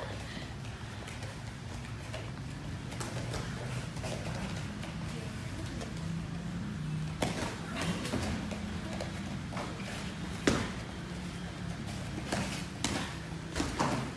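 Scattered thuds and slaps of barefoot sparring on foam mats: feet stamping and gloved blows landing. They come more often in the second half, with the loudest thud about ten and a half seconds in, over a steady low hum.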